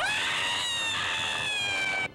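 A woman's long, high-pitched scream. It jumps up sharply at the onset, slides slowly down in pitch, and cuts off suddenly after about two seconds.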